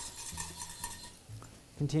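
Metal coil whisk stirring boiling, reducing heavy cream in a stainless saucepan, with repeated light clinks of the wire against the pot.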